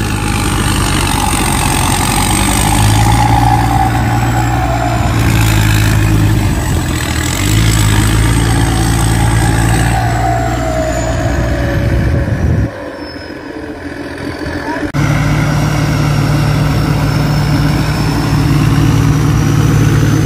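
Engine of a 270 hp P. Charoen Phatthana rice combine harvester running hard as the machine crawls through deep mud. A steady low engine hum carries a thin high whine that drifts slowly down in pitch. The sound drops away briefly about 13 seconds in, then returns with the hum at a higher pitch.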